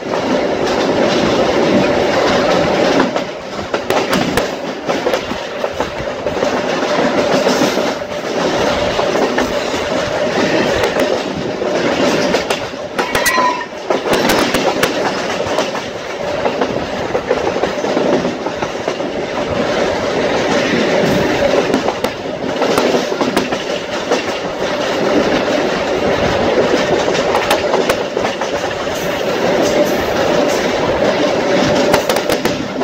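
Supervia Série 500 electric commuter train running at speed, heard from an open window of the car. It makes a steady loud rumble with a constant hum and repeated clicks of the wheels over the rails. A brief high tone comes about thirteen seconds in.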